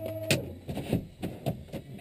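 A steady pitched tone cuts off just after the start. It is followed by a scatter of irregular light clicks and knocks from switches and fittings being handled in a small plane's cabin, with the engines not yet running.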